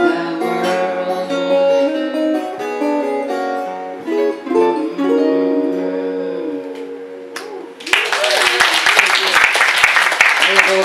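Fingerpicked steel-string acoustic guitar, a Crescent Moon All-Spruce, playing the closing bars of a country blues and ending on a chord that rings and fades out. About eight seconds in, an audience breaks into applause.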